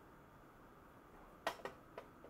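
Faint room quiet, then three short light clicks about one and a half seconds in, from a metal hand tool being handled.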